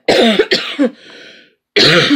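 A woman coughing: a run of several harsh coughs at the start, then another loud cough near the end.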